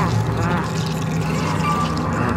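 Eerie horror-film soundtrack: a steady low drone with wavering, moan-like voice sounds rising and falling over it, and a brief thin high tone near the end.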